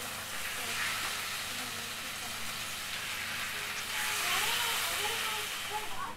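Chicken breasts sizzling in hot oil in a frying pan, a steady hiss that grows louder about four seconds in and cuts off at the end.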